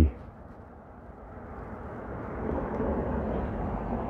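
A distant passing vehicle: a steady rushing noise that swells from about a second in, peaks near three seconds and then eases off slightly.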